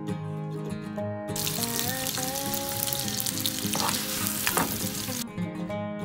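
Food frying in a hot pan: a steady sizzle that starts about a second in and cuts off about five seconds in, with a few sharper crackles near its end.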